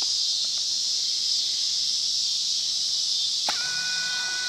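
A steady, high-pitched chorus of insects. Near the end a steady squeal of two or three pitches starts up over it.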